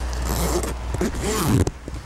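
A jacket zipper being done up, a noisy rasp over a steady low rumble of outdoor field sound; a faint voice comes in briefly past the middle.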